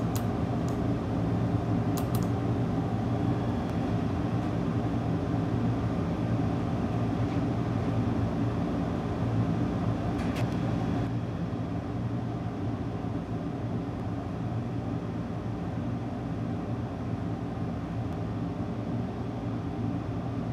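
Steady electric fan hum with a constant low drone, and a couple of faint light clicks, about two seconds in and again around ten seconds.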